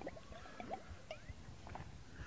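Faint sounds of a man drinking from a bottle: a few quiet gulps and liquid sounds, short and scattered, over the low hiss of the hall.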